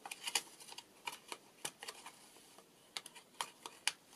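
Handled paper: irregular short, crisp clicks and rustles as fingers open and fold the flap of a small paper pocket in a handmade journal.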